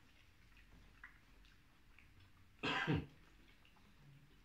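A man gives one short, harsh throat-clearing cough about two and a half seconds in.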